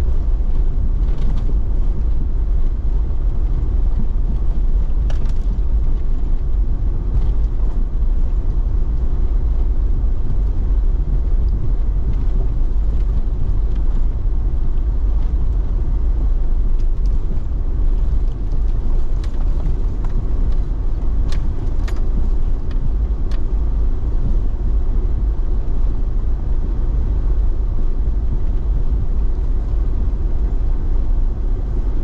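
A car or truck driving slowly on a rough dirt road, heard from inside the cabin: a steady low rumble of engine and tyres, with scattered light clicks and knocks, most of them in the middle stretch.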